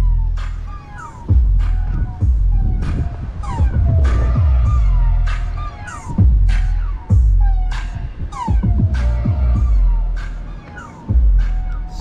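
Music with heavy bass playing through a motorhome's Kicker car-audio system with two 12-inch Kicker Comp C subwoofers, heard from outside through the open door. The deep bass swells and drops every second or two under the melody.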